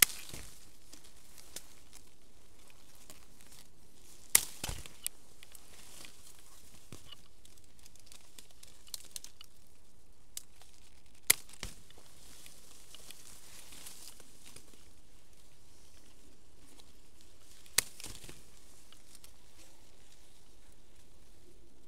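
Hand-held fruit-picking shears snipping through citrus stems: four sharp snips, at the start, about four seconds in, about eleven seconds in and near the end, with a few lighter clicks. Leaves and branches rustle softly between the cuts.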